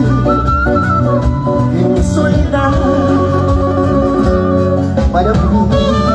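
Live band music amplified through a stage PA, a violin carrying a gliding melody over a strong bass line.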